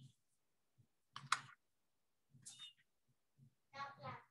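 Near silence on a video-call audio feed, broken by a few brief faint sounds: a short click-like noise just over a second in, another around two and a half seconds, and a short bit of a person's voice near the end.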